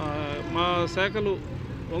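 A man speaking, over a steady low background rumble.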